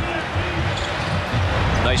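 Basketball dribbled on a hardwood court: several low bounces in a row in a large, echoing hall.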